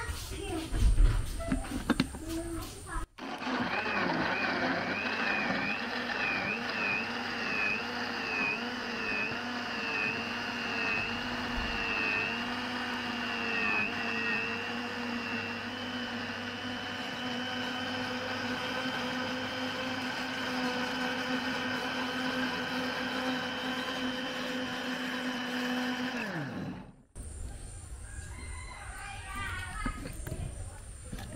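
Philips electric blender puréeing green plantain slices in water. It starts about three seconds in after a few knocks. Its pitch wavers while the chunks are chopped, then settles into a steady whine once the mix is smooth, and it winds down when switched off a few seconds before the end.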